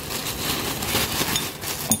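Thin black plastic bag crinkling and rustling as hands open it.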